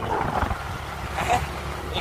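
Wind rumbling steadily on the microphone, with short bits of a person's voice about half a second in and again after a second.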